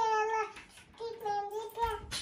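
A small child's high voice in two long, drawn-out notes, the second beginning about a second in.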